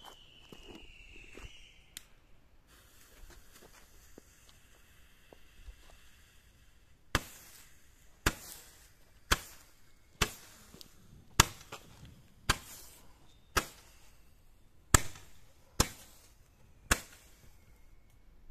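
A fireworks battery being set off. A hiss lasts about four seconds, then ten sharp bangs come at about one-second intervals. A faint falling whistle is heard near the start.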